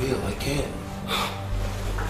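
Two short, breathy gasps from a person, about two-thirds of a second apart, over a steady low music drone.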